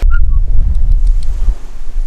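Wind buffeting the microphone, a loud, steady low rumble.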